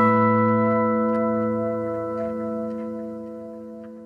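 The last chord of an acoustic guitar ballad ringing out, several held notes fading steadily away together.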